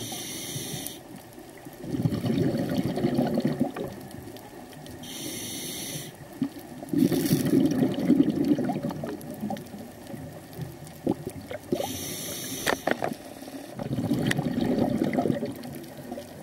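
Scuba diver breathing through a regulator underwater: a short hiss on each inhale, then a burst of bubbling exhaust on each exhale, about three breaths.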